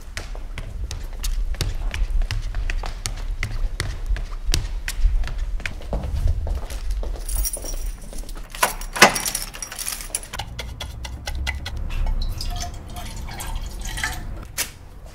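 A run of small handling sounds: keys jingling and clicking at a door lock, then paintbrushes clinking and rattling against a metal paint can, over a low rumble.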